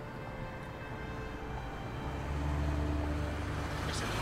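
Road traffic rumbling, swelling as a vehicle passes about halfway through, under soft background music of held tones.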